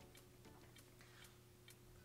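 Near silence: room tone with a faint steady hum and a few faint, irregular ticks.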